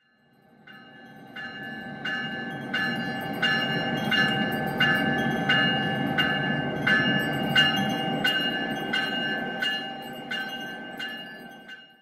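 Locomotive bell ringing steadily, about three strikes every two seconds, over the low rumble of a moving train. The sound fades in and fades out again.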